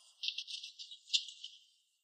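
Insects chirping in a rapid, high-pitched pulsed trill that swells about a quarter-second in, peaks near the middle and fades out just before the end.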